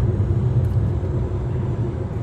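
Steady low rumble of engine and tyre noise heard inside the cabin of a Jeep Compass 2.0 diesel SUV cruising on a highway.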